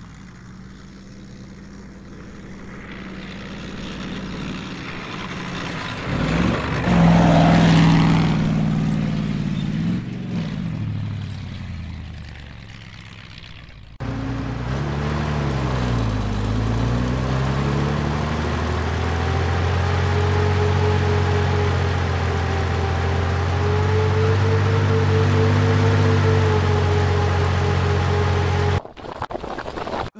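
Bulldozer engine running, growing louder over the first several seconds. About halfway through it cuts to a louder, closer engine sound whose pitch dips and rises again, then runs steadily and stops abruptly near the end.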